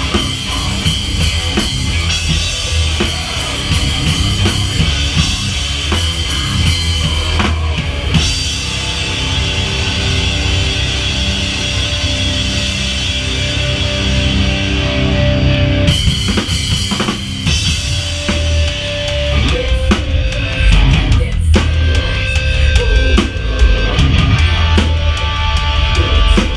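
A heavy rock band playing live in a small room: loud drum kit with bass drum and cymbals under electric guitar, with no let-up.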